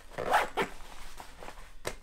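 Handling of a GORUCK Bullet Ruck backpack as its front panel is folded over and pressed down by hand: a brief fabric swish about a quarter second in, light rustling, then a sharp click near the end.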